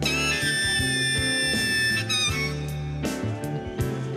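Harmonica holds one long note for about two seconds, then plays a quick wavering bend, over a live blues-rock band; drum beats come back in during the second half.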